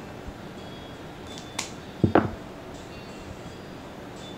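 Handling noise while a gum-stuck mesh net is worked off a Madball toy: a sharp click about one and a half seconds in, then a brief double knock just after.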